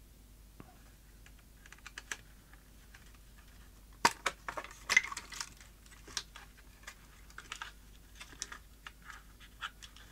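Light clicks, taps and small plastic knocks as screws are undone and a circuit board is handled and lifted out of a small plastic radio case. There are a few scattered clicks at first, a sharper click about four seconds in, then a run of irregular clicks and rattles.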